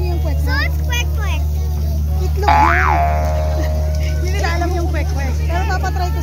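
A short cartoon-style "boing" sound effect about two and a half seconds in: a tone that shoots up in pitch and drops straight back down. Under it run a steady low hum and people talking.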